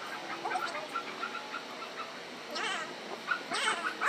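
A dog whining in short high calls, then two longer falling whines in the second half. The recording plays at two and a half times normal speed, which raises the pitch and quickens the calls.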